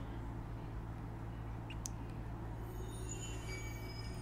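A steady low hum with an even noise floor, broken only by a faint click about two seconds in; faint high thin tones come in near the end.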